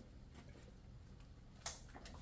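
Near silence: quiet room tone with a low hum, broken by one short faint click near the end.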